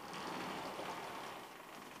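Vertically sliding blackboard panels being pushed along their tracks: an even rolling noise that starts abruptly and slowly fades away.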